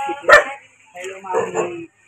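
A dog barking once, short and sharp, about a third of a second in, over people talking.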